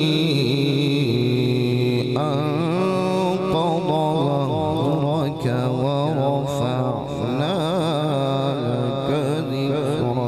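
A male qari reciting the Quran in the melodic tajweed style into a microphone: long held notes that waver and turn in ornamented runs, with no break between phrases.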